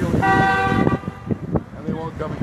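A car horn honking once: a single steady toot lasting under a second, shortly after the start.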